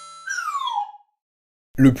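A short whistle-like sound effect that glides down in pitch over about half a second.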